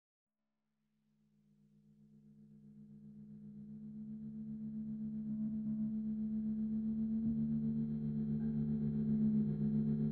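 Opening of an experimental, avant-garde music track: after about a second of silence, a low drone of a few steady held tones fades in, swells over the next several seconds and then holds, wavering slightly in a regular pulse.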